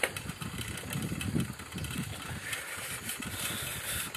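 A vehicle's engine running at low speed while it is driven along a road: a low, uneven rumble.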